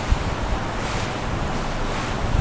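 A steady rushing noise with an uneven low rumble underneath, like wind on a microphone.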